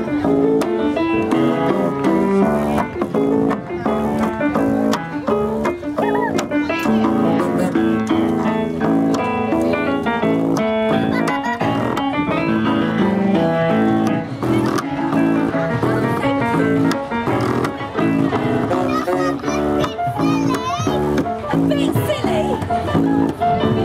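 Live music on an upright piano with a plucked double bass, playing a tune without pause.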